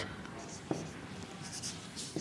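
Marker pen writing on a whiteboard: a few short, faint scratchy strokes.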